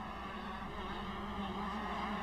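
125cc two-stroke motocross bikes racing on the track, heard as a steady engine drone that grows slightly louder.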